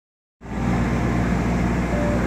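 Steady low rumble of street traffic and idling engines, starting a moment in after a brief silence.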